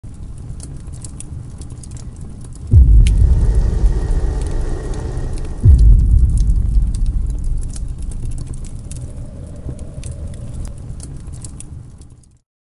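Logo intro sound effects: a low rumble with crackling, then two deep booming hits about three seconds apart, each dropping in pitch and fading slowly away.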